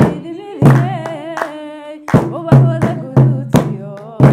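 Somali baraanbur song: a woman's voice sings a wavering, ornamented melody with held notes, over sharp rhythmic claps and drum beats that come thicker from about halfway through.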